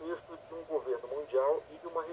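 A man speaking over a telephone line, his voice thin and narrow-band: a phone-in caller talking.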